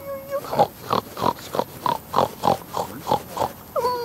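A rapid series of pig grunts, about three a second, starting about half a second in.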